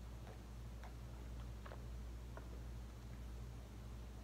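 A man sipping and swallowing beer from a glass: about six faint, irregularly spaced mouth and swallow clicks over a low steady hum.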